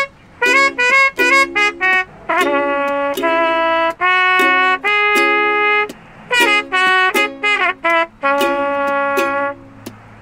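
A trumpet-like melody with a buzzy, brassy tone: quick short notes at first, then longer held notes, with a short break about six seconds in.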